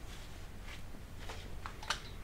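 Quiet room tone with a steady low hum and a few faint soft ticks, the last and clearest just before the end.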